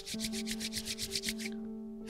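Palms rubbed briskly together: rapid, even swishing strokes that stop about a second and a half in. Soft sustained background music runs underneath.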